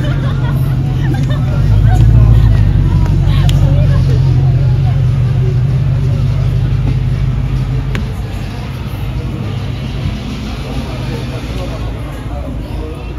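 Low rumble of a car engine passing close by, loudest about two seconds in and easing off after about eight seconds, under the chatter of a street crowd.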